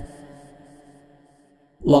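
The end of a man's melodic Quran recitation fading away over about a second and a half to near silence, then the next recited phrase starting just before the end.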